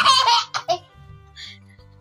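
A young child laughing, high-pitched, in the first half-second with a short burst just after, over soft background music.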